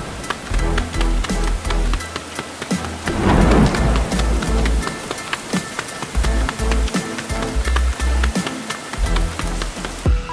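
Heavy rain sound effect, a dense patter of drops with thunder, over background music with steady bass notes. The rain swells louder about three seconds in.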